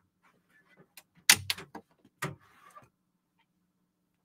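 A few short, sharp clicks and knocks of cables and a camera mount being handled. The loudest come about one and a half and two and a quarter seconds in, between stretches of near silence.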